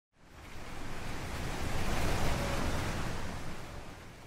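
A whoosh of rushing noise, like wind or surf, swelling up over about two seconds and then fading away: an intro sound effect for a logo reveal.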